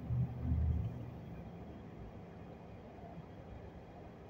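A low rumble in the first second fades into faint, steady outdoor background noise.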